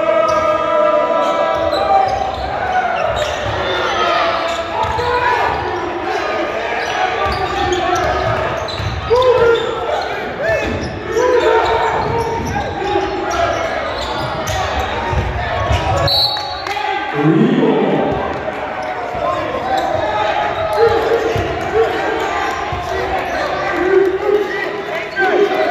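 Basketball dribbled and bouncing on a hardwood gym floor, mixed with players' and spectators' voices calling out, all echoing in a large gymnasium.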